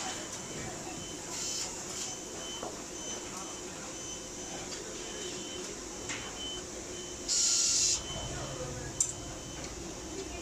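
Factory-floor ambience: a steady hum with faint short beeps repeating now and then. About seven seconds in comes a short, loud hiss lasting under a second, and a single sharp click follows a second later.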